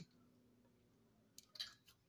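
Near silence, broken late on by one faint tick and then a short, soft rustle.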